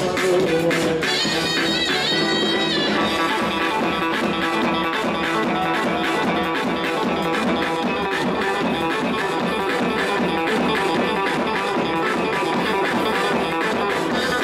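Loud Turkish halay dance music with a fast, repeating plucked-string melody over a steady beat, with a brief high gliding phrase about a second in.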